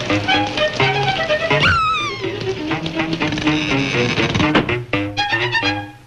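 Cartoon score with a fiddle playing over a bass line. About two seconds in, a falling whistle-like glide cuts across the music.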